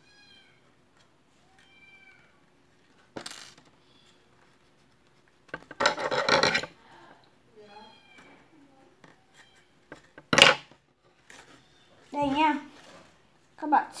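Short high-pitched animal calls repeated several times, with a louder, longer call about six seconds in and a sharp clatter about ten seconds in.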